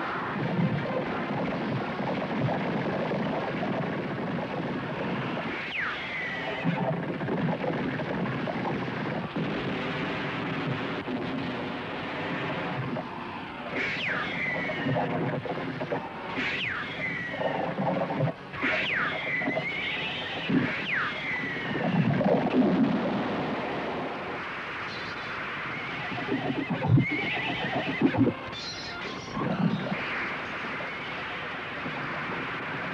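Horses neighing about five times in the middle stretch, each whinny starting high and falling with a wavering tail, over film background music.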